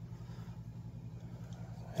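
A steady low hum in the room background, with no other sound.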